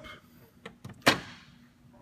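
A car hood being handled: a few light clicks, then one sharp metallic clunk about a second in that rings briefly.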